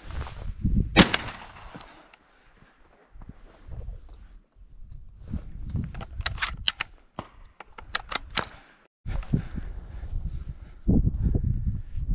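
A single shotgun shot about a second in, sharp and loud with a short fading tail. A run of softer clicks follows in the middle.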